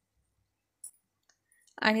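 Near silence with a single short, faint click a little under a second in and a few fainter ticks after it; a narrating voice starts near the end.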